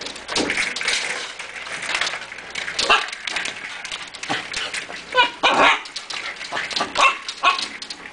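Pet dog giving excited, irregular barks, yips and whines in short bursts, a few of them louder, worked up by a squirrel just outside the glass door.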